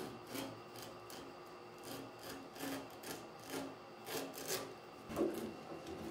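Hand wood chisel scraping and paring at the bottom edge of a wooden toilet-stall door in short, irregular strokes, roughly two a second, with a heavier knock about five seconds in.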